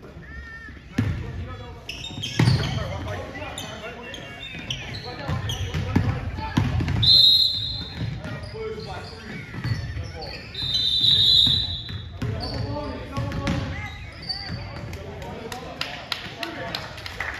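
Basketball being dribbled on a hardwood gym floor amid indistinct voices, with many short knocks. A referee's whistle blows twice, briefly about seven seconds in and longer about ten and a half seconds in, stopping play for a foul and free throws.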